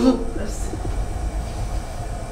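A steady low rumble, with a man's single spoken word at the very start.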